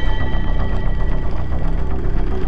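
Dark soundtrack music with a fast, rattling, machine-like rhythm.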